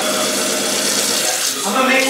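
Kitchen tap running, water pouring into a steel sink and small plastic shot cups as they are filled, a steady hiss, with laughter over it.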